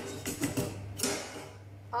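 Utensils knocking and clinking against dishes and a pan while risotto is served: a few short knocks, one right at the start and another about a second in.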